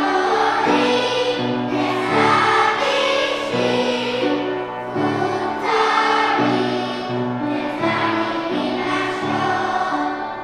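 Children's choir singing a song in unison, over a piano accompaniment playing chords.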